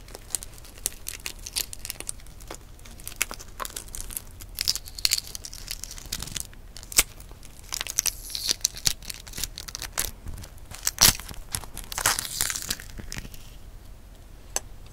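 Shell of a hard-boiled brown egg being cracked and peeled off by fingers: a run of sharp crackles and small snaps, with bursts of crinkly shell-and-membrane tearing. The sharpest snap comes late on.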